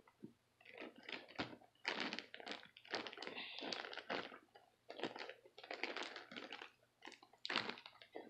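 Plastic zip-top bag of powdered milk crinkling and rustling as it is handled, in irregular bursts of crackle with short pauses between them.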